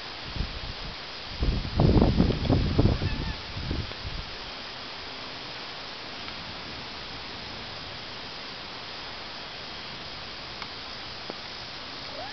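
Wind gusting across a camcorder microphone: a couple of seconds of low, uneven buffeting about one and a half seconds in, over a steady outdoor hiss.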